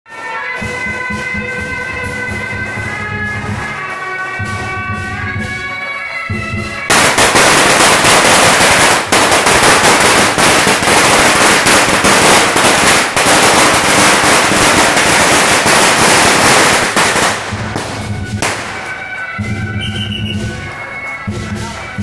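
Procession band of suona (Chinese shawms) and drums playing a melody; about seven seconds in a long string of firecrackers goes off, crackling densely and loudly for about ten seconds and drowning the band, which is heard again near the end.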